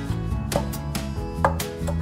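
A long wooden pestle pounding green leaves in a stone mortar, two strikes about a second apart, the second the louder, over background guitar music.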